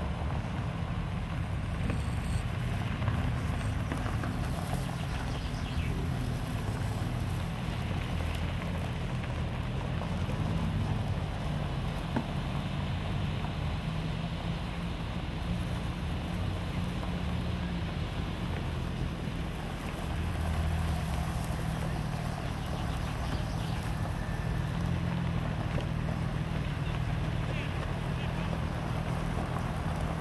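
Car engines running at low speed as several cars pull slowly onto a gravel drive and park, a steady low sound throughout, with indistinct voices in the background.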